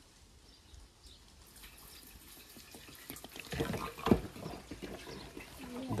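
Petrol pouring from an upturned plastic bottle into a motorcycle's fuel tank. It starts faintly and grows louder, and is loudest around four seconds in.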